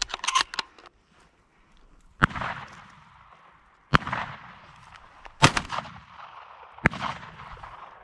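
Four shotgun shots in the field, about a second and a half apart, each trailing off in an echo. The third is the loudest.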